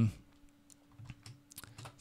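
A few scattered computer keyboard keystrokes, mostly in the second half, over a faint steady hum.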